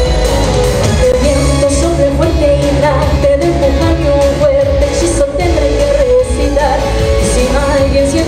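A woman singing an upbeat pop anime theme song live into a microphone, with full pop accompaniment.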